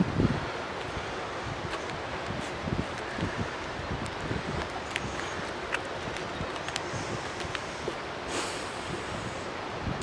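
Steady wind noise on the microphone, with faint scattered ticks and scrapes of a knife cutting and breaking a piece off a compressed cedar-sawdust firestarter cake. A brief louder rush of noise comes near the end.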